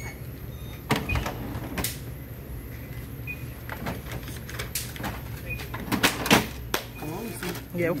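Point-of-sale counter sounds as a cashier rings up a sale: scattered sharp clicks and knocks, a few short faint beeps and a steady low hum.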